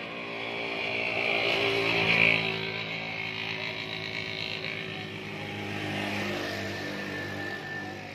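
A motor vehicle's engine running. It swells to its loudest about two seconds in, eases off, and rises again a little near the end.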